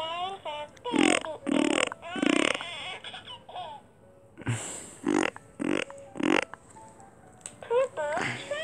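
Short bursts of a voice laughing and babbling: a run of three about half a second apart, a pause, then four more in quick succession.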